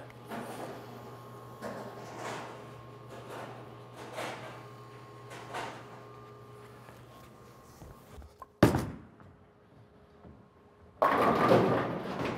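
An Ebonite Game Breaker 2 bowling ball is released onto the lane, landing with a single sharp thud about two-thirds of the way in. Near the end a louder, steady rumble begins as the ball rolls down the lane.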